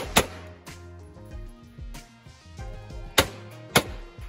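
Four handgun shots over background music: two in quick succession right at the start, then two more about half a second apart near the end.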